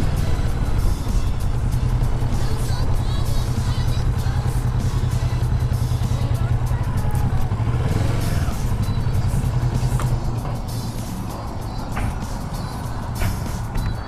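Kawasaki Vulcan S 650 parallel-twin engine running at low speed, with a steady low hum and wind noise on the helmet microphone. About ten seconds in, the engine note drops and the sound gets quieter as the bike slows.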